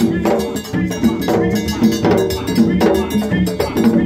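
Live gagá percussion: hand drums and struck metal percussion playing a steady rhythm, with an accented hit about once a second and quicker strokes between.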